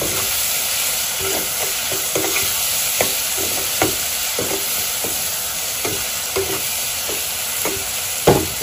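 Onions, tomatoes and spices frying in oil in a kadai, a steady sizzle, while a steel ladle stirs them and scrapes against the pan with irregular clinks about once or twice a second.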